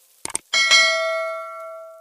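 A quick double mouse click, then about half a second in a bright bell chime that rings on and fades away. It is the sound effect of a subscribe-button and notification-bell animation.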